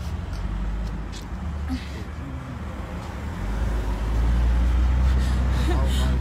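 Low steady rumble of a moving vehicle heard from inside it, growing louder about three and a half seconds in, with faint voices in the background.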